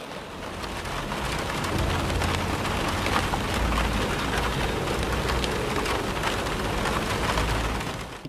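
Steady rain falling, a dense even patter with a low rumble underneath, swelling in over the first couple of seconds and then holding.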